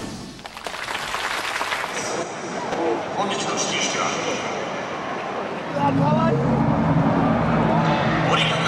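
Crowd noise echoing around a large baseball stadium, with a public-address voice over the speakers. About six seconds in, steady low notes of stadium music join and the sound grows louder.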